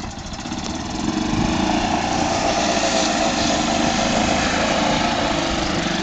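Gas golf cart's small engine rising in speed as the cart pulls out of a muddy rut, then running steadily as it drives off across the grass.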